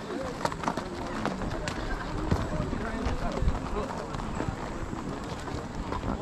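Horses walking on a dirt trail: scattered hoof strikes and tack clicks, with indistinct voices of nearby riders.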